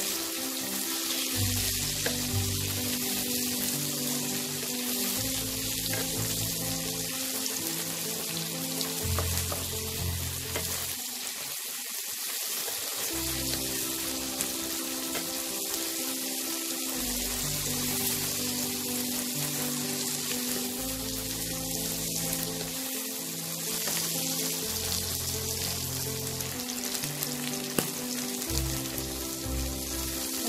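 Chopped onion, tomato and green chillies sizzling steadily as they fry in mustard oil in a non-stick wok, stirred now and then with a wooden spatula, cooking until the tomato softens.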